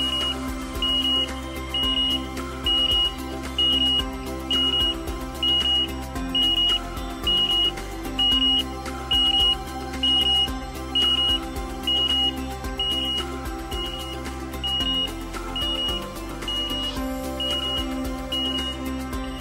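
Forklift collision-warning alert box giving a steady high-pitched beep, about once a second, that stops just before the end, signalling a forklift and pedestrian too close together. Background music plays underneath.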